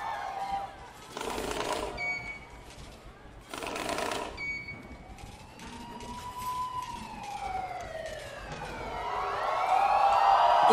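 A siren-like wail that slowly rises and then falls, played as a sound effect in a stage show's intro. Two short bursts of crowd screaming come about one and four seconds in, with a few brief high beeps.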